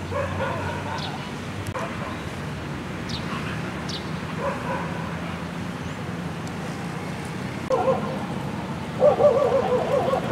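Short, yelping animal calls like barks: a pair about three-quarters of the way in and a louder run of them near the end, over a steady outdoor hum.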